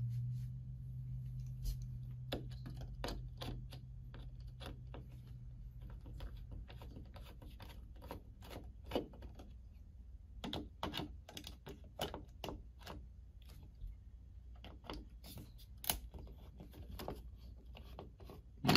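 Screwdriver loosening a mounting screw on a metal thermostat base plate: irregular small clicks and scrapes from the tip in the screw head and the screw turning. A low steady hum runs under the clicks for the first several seconds, then fades.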